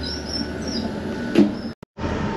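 Toilet door on a moving Renfe train being opened by its lever handle: faint high squeaks in the first second and a sharp click about one and a half seconds in, over the steady rumble of the train. The sound cuts out briefly near the end.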